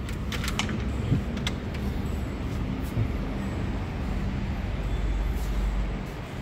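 Steady low background rumble, with a few short light clicks in the first second and a half and another around three seconds in.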